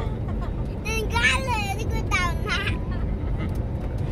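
Steady low drone of an airliner's passenger cabin, with a young child's high-pitched voice rising and falling twice, about a second in and again about two seconds in.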